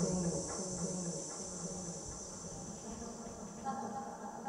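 Electronically altered sound score built from recorded audience audio: a high, steady drone over a lower hum that fades after the first second or two, with a new mid-pitched tone entering near the end.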